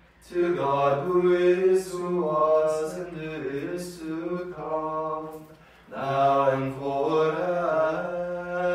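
Unaccompanied voices chanting together in a slow plainchant-style line, with sustained notes and short breaks between phrases, one about five and a half seconds in.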